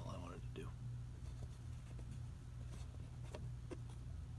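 Low, steady electrical hum from the keyboard recording rig, with a few faint clicks in the second half and a brief faint voice-like sound in the first half-second.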